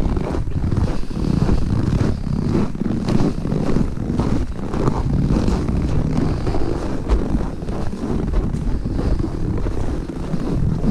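Wind buffeting the microphone in a steady low rumble, with footsteps crunching in snow.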